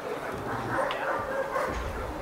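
German Shepherd dog vocalising with short yips while heeling close beside its handler.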